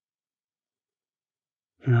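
Near silence, then a man starts speaking right at the end.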